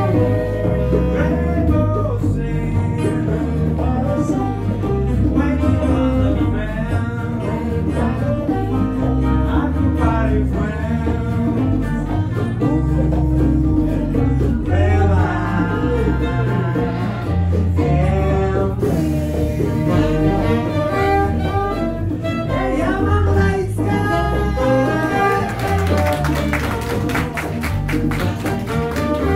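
A live band playing: a woman singing into a microphone over saxophones, acoustic guitar and electric bass, with a steady bass line.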